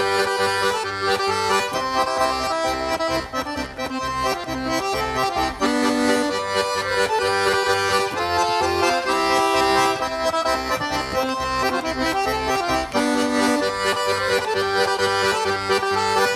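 Estonian lõõtspill, a small diatonic button accordion, playing a folk tune: a sustained reedy melody over a steady pulsing bass accompaniment.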